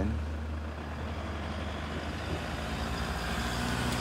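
Toyota HiAce van's engine running with a steady low hum as the van drives up.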